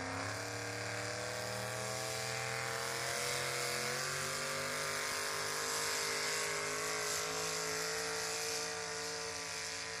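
Small-block V8 of a 4x4 pull truck at full throttle, dragging a weight-transfer sled. The engine is held at high revs, its pitch climbing slightly, then drops off near the end as the pull finishes.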